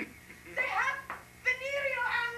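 A woman's high-pitched wailing cries: two drawn-out, pitch-bending calls, the second starting about halfway through and running on.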